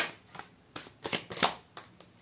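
Tarot cards being shuffled by hand: a run of short, sharp card flicks, about one every 0.4 s.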